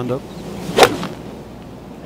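A golf iron striking the ball off the tee: one sharp crack about a second in.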